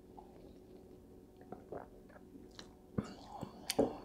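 A man taking a swig of beer from a glass and swallowing: faint mouth and swallowing sounds with a few small clicks, growing busier near the end.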